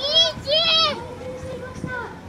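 A high-pitched voice calls out two short syllables, each rising and falling in pitch, in the first second, over a faint steady tone and outdoor crowd background.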